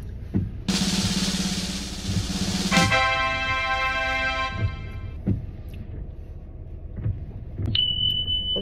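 A drum roll sound effect of about two seconds, cutting straight into a held musical note that fades out over the next two seconds.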